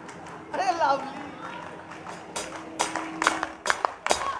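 A stop in a live rock song: a voice calls out briefly over a faint held tone, then sharp hand claps start up in a steady beat of about two a second.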